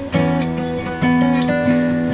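Acoustic guitar playing a melodic instrumental line over a backing track, with new notes struck about a tenth of a second in and again about a second in, left to ring.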